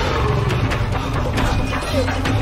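A jaguar roaring in a film soundtrack, over the film's score music.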